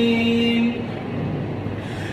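A man's voice reciting the Quran holds the long final note of a verse, which stops under a second in. A steady rush of room noise with reverberation follows through the pause.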